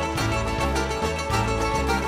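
A live band playing a Greek popular song, with plucked strings over a steady, repeating bass line.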